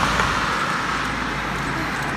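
A car passing close by on the road, its tyre and road noise starting loud and slowly fading as it moves away.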